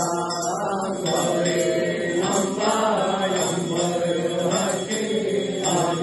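Hindu evening aarti hymn sung as a continuous chant, the voice gliding over a steady held tone.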